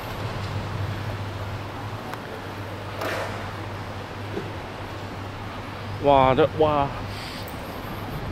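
Steady low drone of a moving car's engine and tyres, heard from inside the cabin. A voice speaks briefly about six seconds in.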